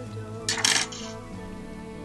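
Soft background music with held notes, and about half a second in a brief metallic clink from the fly-tying scissors as the tying thread is cut off.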